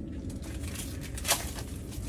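Low rustling handling noise as hands grip and move a large walleye over the ice hole, with one sharp knock a little over a second in.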